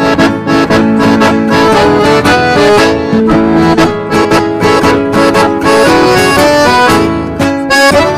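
Instrumental passage of a gaúcho xote: an accordion plays the melody in quick, short notes over a steady rhythmic accompaniment, with no singing.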